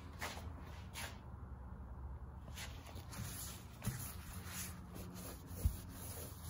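Soft, irregular rubbing strokes of wet sandpaper by hand over glazing putty on a fiberglass car hood, with two light knocks, one a little past the middle and one near the end.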